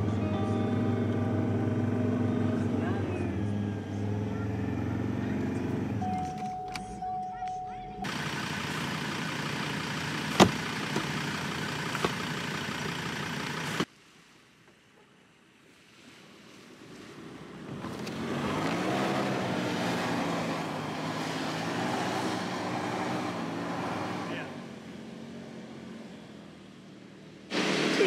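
Four-wheel-drive vehicle driving on soft beach sand, its engine running under load, with the revs rising and falling in the second half. The sound comes in several separate pieces, with a short near-silent gap partway through.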